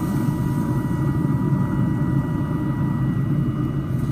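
Steady low rumble with a faint, steady high hum above it and no distinct knocks or other events.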